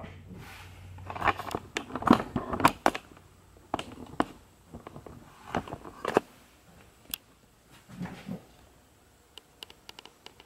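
Handling noise as a dried gourd banjo body is set down and shifted on a soaked goat hide on a wooden workbench. Scattered light knocks, scrapes and clicks come irregularly, busiest in the first six seconds and sparser after.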